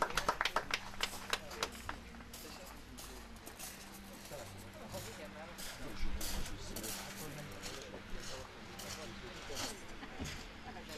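Spectators clapping, dense for the first two seconds and then thinning to scattered claps, after a winner and result are announced. Faint voices murmur underneath.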